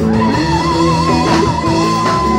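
Live blues band playing, with a Yamaha Motif XF8 keyboard, bass and drums. A lead note wavers with wide vibrato for over a second, then holds steady.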